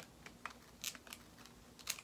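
A sandal's metal buckle and strap being worked by hand: faint clicks, with two brief louder scratchy sounds, one about a second in and one near the end.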